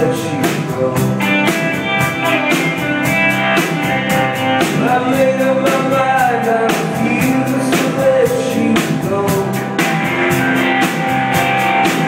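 A live band playing a rock song: acoustic guitar, electric bass and drum kit, with the drums keeping a steady beat.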